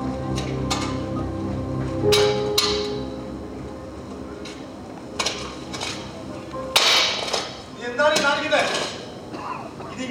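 Sharp metal clanks of work tools striking, spaced irregularly about a second apart. A sustained music backing fades out about two seconds in. Voices call out near the end.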